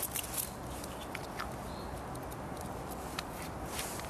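Wood campfire crackling under a cooking pot, with scattered small, sharp pops over a steady low background rush.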